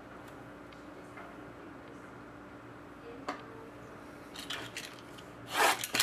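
A few small clicks of cards being handled over a faint hum, then, in the last second or so, a louder rubbing and scraping as a cardboard card box is slid across the tabletop.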